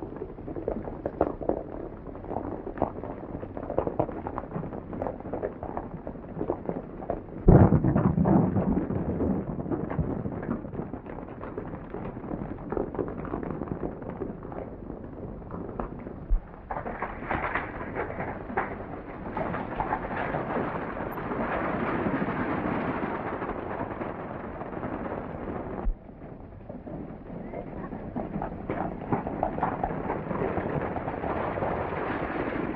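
Horses galloping, many hooves drumming on a dirt trail with wagon wheels rumbling, on an old muffled film soundtrack. A sudden loud bang about seven seconds in rumbles away. The hoofbeats grow denser and louder past the middle, then drop off suddenly a few seconds before the end.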